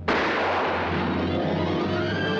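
A single loud pistol shot on an old film soundtrack, its blast fading over about a second into film-score music with sustained notes.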